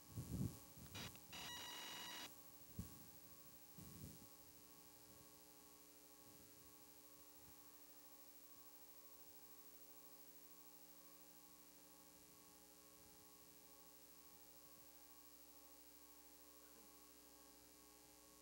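Near silence with a faint steady electrical hum. A few faint brief sounds come in the first four seconds, among them a short steady tone of about a second.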